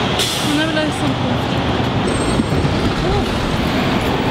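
Busy city street noise: traffic running steadily, with passers-by talking faintly.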